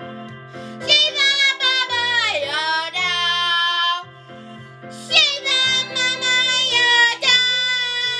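A young girl singing long, sliding notes over a recorded backing track with a steady bass line, with a short break in the voice about halfway through.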